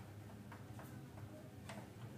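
A few faint, irregular clicks and ticks of plastic parts being handled inside an opened-up inkjet printer mechanism, over a low steady hum.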